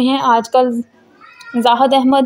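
A woman's narrating voice-over, with a short pause of about half a second near the middle.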